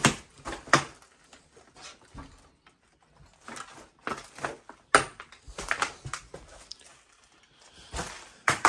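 Irregular knocks and clatters: a cluster in the first second, then another from about halfway through, with quieter stretches between.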